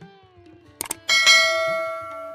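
Subscribe-button animation sound effect: a quick double mouse click a little under a second in, then a bright notification-bell ding that rings out and fades over about a second. Soft sitar music plays underneath.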